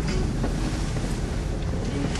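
Car running, a steady low rumble of engine and road noise heard from inside the cabin, with wind buffeting the microphone.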